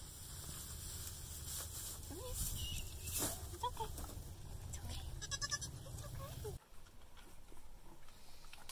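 Nigerian dwarf goat kids bleating a few short times as they are handled, over a low rumble that cuts off abruptly about two-thirds of the way through.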